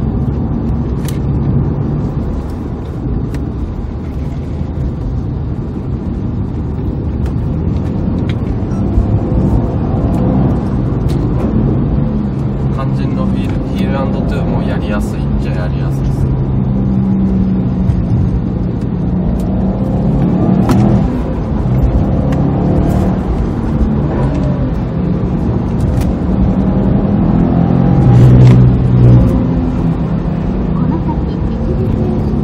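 Subaru WRX STI's turbocharged flat-four heard from inside the cabin while driving, the revs rising and falling through heel-and-toe downshifts, with the loudest rise near the end.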